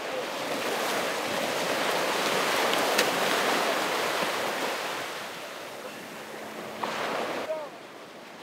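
Sea waves breaking on a beach and water splashing as people plunge into the shallows. The rush of water swells over the first few seconds, then eases.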